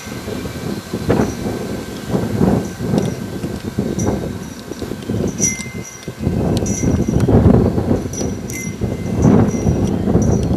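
Wind buffeting the camcorder's microphone outdoors: an uneven, gusty low rumble that swells and drops. Short faint high tinkles come through now and then.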